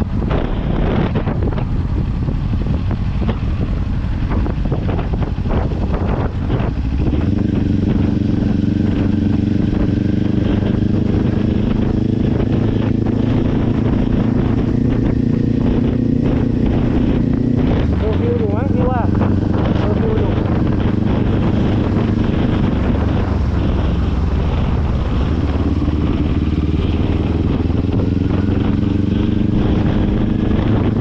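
Kawasaki Ninja 400's parallel-twin engine running while the motorcycle is ridden, heard from the rider's position. Wind buffets the microphone for the first several seconds, then the engine note holds steady, shifting briefly a little past halfway.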